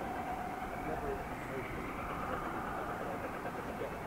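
A4 steam locomotive and a GWR Class 800 train standing at signals: a steady hum and hiss from the halted trains, with faint voices.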